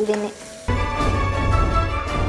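Instrumental background music starts suddenly about two-thirds of a second in: a steady bed of held tones over deep bass. Under it, faint clicks of a steel spatula stirring spices in a frying pan.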